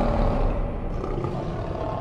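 A lion's roar sound effect in an animated logo sting, fading gradually.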